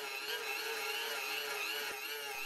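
Hand-cranked geared DC motor running as an electric generator at high speed, a steady whine with a slight waver in pitch. The crank is held at about 180 rpm, turning the generator at about 9000 rpm.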